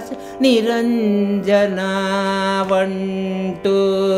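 An elderly woman's voice singing a Carnatic thillana phrase, first with quick ornamented slides between notes, then holding one long steady note for about two seconds, over a steady drone.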